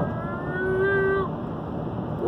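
Steady road and tyre noise inside a car cabin at highway speed. A long, slightly rising high-pitched tone sits over it for the first second or so, then stops.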